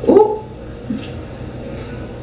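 A dog out of shot gives a single short bark right at the start, sharp at onset and sweeping upward before it breaks off.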